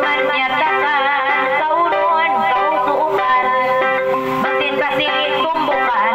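A woman chanting a kissa, a Tausug sung narrative, into a microphone in long, ornamented, wavering vocal lines, over steady accompaniment from a Yamaha PSR-S arranger keyboard.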